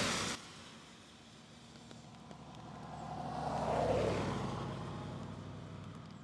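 A road vehicle passing by: its sound swells to a peak about four seconds in and then fades, dropping in pitch as it goes past.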